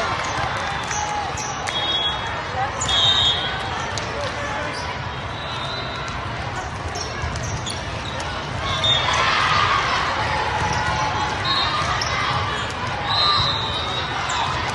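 Indoor volleyball play in a large echoing hall: sneakers squeaking briefly on the sport court several times, the ball being struck, over a steady din of many voices from players and spectators, which swells about nine seconds in.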